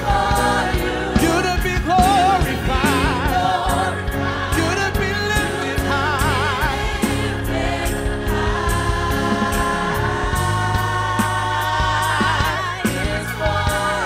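Gospel worship team singing together into microphones, with a lead voice singing with vibrato over a band with a steady beat and bass.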